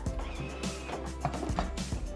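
Background music with steady sustained tones and a light regular beat.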